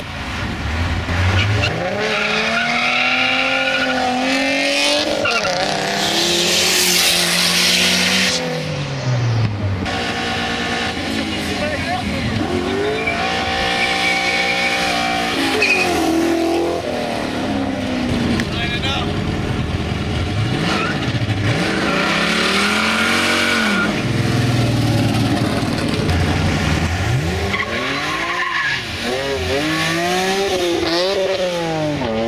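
A series of sports cars accelerating hard past one after another, each engine revving up through the gears and then fading away. About six to eight seconds in there is a loud hissing burst, like tyres squealing.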